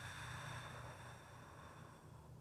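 A soft breath out, a faint breathy hiss that swells in the first half second and fades away over the next second or so, over low steady room hum.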